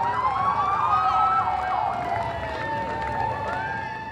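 Sirens sounding, more than one at once: fast up-and-down yelps give way to long, slow glides that rise and fall in pitch.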